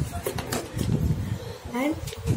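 Mostly a child's voice, saying "and" with a rising pitch near the end, over soft rustling from a sheet of paper being handled on a tabletop.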